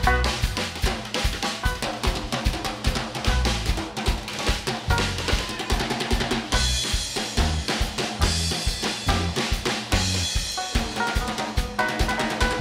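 Live band playing an instrumental passage with the drum kit to the fore: a fast, busy run of snare and kick drum hits. Cymbals wash in from about halfway through, and guitar lines come back near the end.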